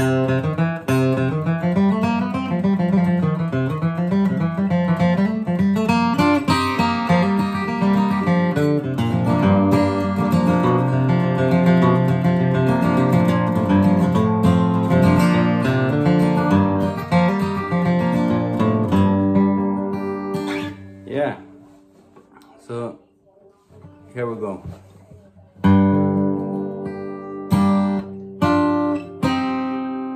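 Steel-string acoustic guitar with a capo, flatpicked: a quick run of single melody notes over moving bass notes. It plays steadily for about twenty seconds, thins out to a few quieter, halting notes, then picks up again a few seconds before the end.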